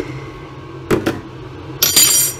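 Kitchen items being handled beside a pan on the hob: two short knocks about a second in, then a sharp clink that rings on briefly near the end, over a steady low hum.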